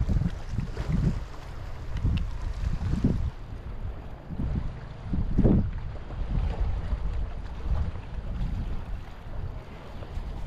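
Wind buffeting the microphone in uneven gusts: a low rumble that swells and fades every second or so, loudest about five and a half seconds in.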